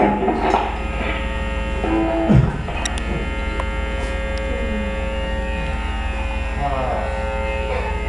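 Loud electric guitar, bass and drums stop within the first second, leaving the band's amplifiers humming and buzzing with steady held tones. About two and a half seconds in, a low bass note slides down and ends in a thump, and a few quiet sliding guitar notes sound later on.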